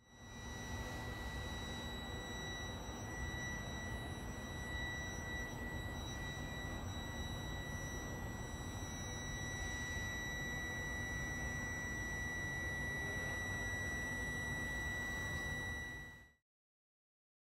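Trenitalia Intercity train at a station platform: a low rumble under a steady high-pitched whine that holds for the whole stretch.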